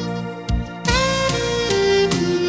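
Instrumental background music: a lead melody of long held notes over a steady drum beat, with a short dip about half a second in and then a new note sliding up.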